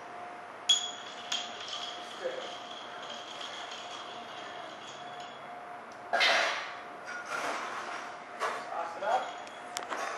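Bar glassware clinking as a cocktail is mixed: a sharp clink about a second in leaves a high ring that fades over about five seconds, followed by lighter clicks and a short rush of noise about six seconds in.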